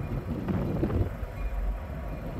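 Low, steady rumble of a trio of CN SD60 diesel locomotives idling and working as the train readies to depart.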